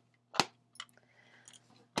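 Tarot cards being handled and laid out: one sharp click about half a second in, then a few soft ticks, over a faint steady low hum.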